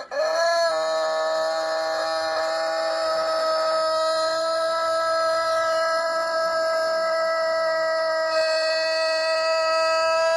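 Rooster crowing one very long, unbroken held note that rises at the very start and then stays at a steady pitch.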